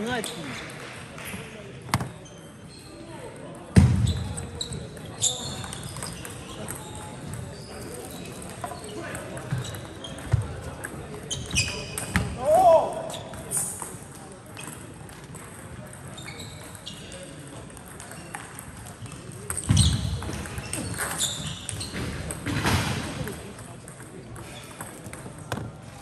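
Table tennis ball clicking sharply off rackets and table in rallies, with reverberation from a large sports hall. Two heavier thumps stand out, one early and one near the end.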